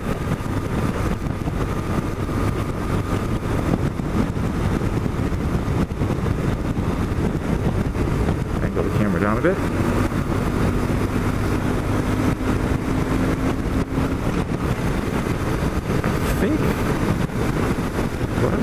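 1997 BMW R1100RT's boxer twin engine running steadily while riding at road speed, with wind and road noise.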